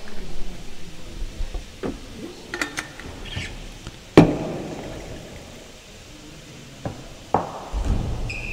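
A few sharp knocks echo around an indoor real tennis court. The loudest comes about four seconds in and rings on with a long echoing decay.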